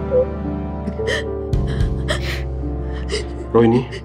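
A woman crying, with short sobbing gasps and a brief voiced sob near the end, over sustained dramatic background music.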